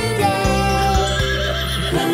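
Upbeat children's song music, with a cartoon horse whinnying over it in a wavering call across the second half.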